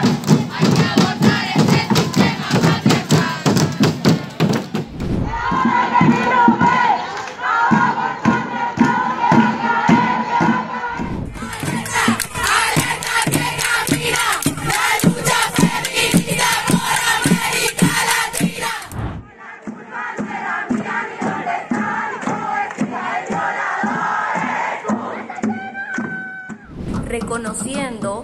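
A marching crowd of women chanting slogans in unison over a street drum group (tamborada) beating a steady rhythm. The sound changes abruptly a few times as separate recordings of the march follow one another.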